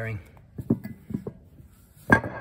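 A man's voice ends a word, then comes a quiet stretch with a few light knocks and clicks of handling, the loudest a little under a second in.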